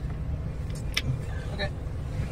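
Low steady rumble of a car heard from inside the cabin, with a single sharp click about a second in.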